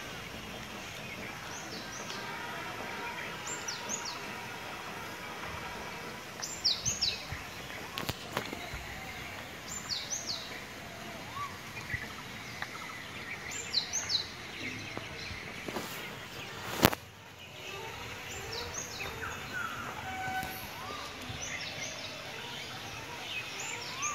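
Outdoor background noise with small birds chirping in short, high, paired notes every second or two. A single sharp click about two-thirds of the way through is the loudest sound.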